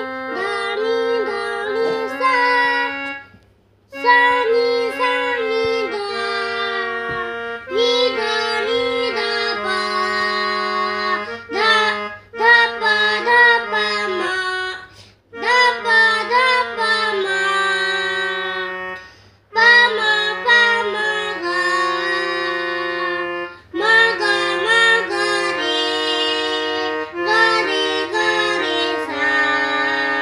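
Mini electronic keyboard played by a child, a simple melody of steady held notes in short phrases with brief pauses between them, about six phrases in all.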